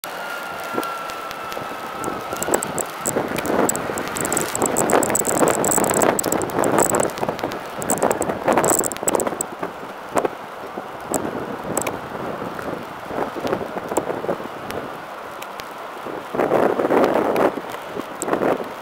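Outdoor street noise with wind on the microphone, swelling and easing in gusts, and scattered sharp clicks.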